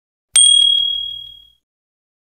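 A bell ding: a bright ringing tone that starts suddenly with a quick rattle of about four strikes, then fades out over about a second.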